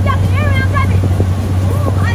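Motorboat under way: the engine's steady low drone with the rush of wind and water. A child's high voice calls out in about the first second.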